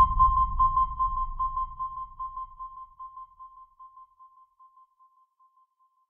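The closing tail of a dubstep track: a single high synth tone pulsing about five times a second over a low rumble, both fading out. The rumble is gone by about halfway, and the tone dies away about five seconds in.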